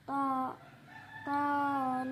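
A boy chanting Quran recitation (tilawah). He sings a short syllable, then after a pause begins a long held, melodic note that runs on past the end.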